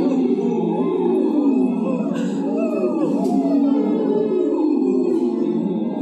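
Several people phonating through drinking straws, each voice gliding up and down through its pitch range so the overlapping tones rise and fall continuously: a straw-phonation (semi-occluded vocal tract) warm-up.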